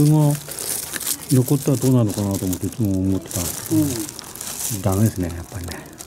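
Dry, papery layers of a yellow hornet nest crinkling and crackling as a hand breaks into the comb, under a man talking.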